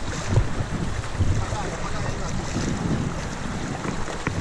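Moving river water rushing around an open canoe as it runs through a choppy current, with wind buffeting the microphone; a steady noise throughout.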